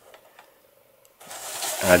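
Cardboard-and-plastic diecast display box handled close to the microphone: after about a second of near quiet, a rubbing, rustling noise that grows louder as the box is turned in the hands.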